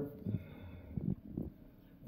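Faint sprinkling of dry seasoning shaken from a glass spice jar onto raw meat, with a few soft light ticks.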